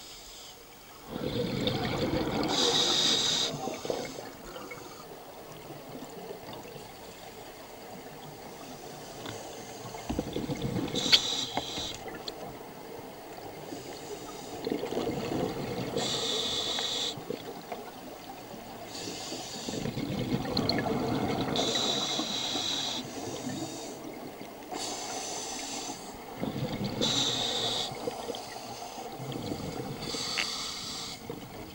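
Scuba diver breathing through a demand regulator underwater: a hiss on each inhalation and a bubbling rush of exhaled air, repeating every few seconds.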